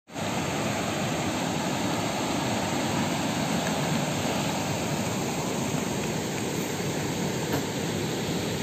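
River water rushing steadily over rocks and small rapids, a continuous even roar.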